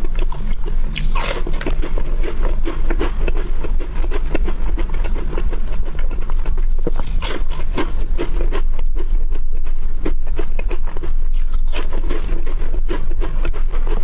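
Crisp chocolate wafer bar bitten and chewed close to the microphone. The sharpest crunch comes about a second in, then crunchy chewing with further crisp bites, over a steady low hum.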